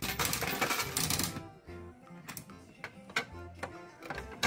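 Capsule-toy (gacha) vending machine's crank handle being turned, its ratchet clicking rapidly for about a second and a half. A few separate clicks and knocks follow, with faint background music.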